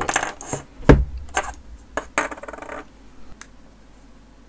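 Small hard objects being handled: a string of clicks and knocks with a brief metallic clatter, the loudest knock about a second in, dying away after about three seconds.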